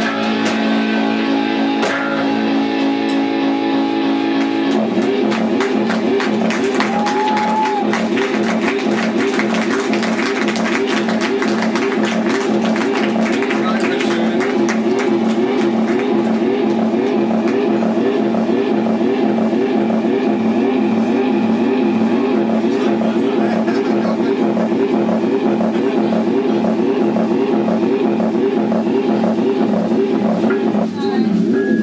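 Live rock band playing loud: electric guitars through amplifiers, with a drum kit. A held chord rings for the first few seconds, then a fast repeating riff takes over from about five seconds in.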